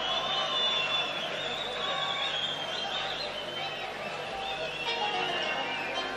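Live orchestral music from the concert stage, with high wavering melodic lines carried over a dense accompaniment.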